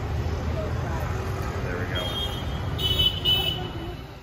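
Busy street traffic: a steady rumble of passing engines, with a vehicle horn honking twice in quick succession near the end.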